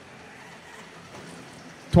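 Faint, steady background noise of an indoor arena during a robotics match, an even hiss with no distinct knocks, cheers or calls. A man's commentary starts right at the end.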